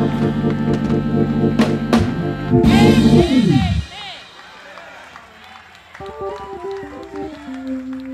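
A live church band with saxophone, bass guitar and drums holds a loud final chord with a few drum and cymbal hits. About three and a half seconds in, the chord slides down in pitch and stops. After that it is much quieter, with voices calling out and a few stray low notes.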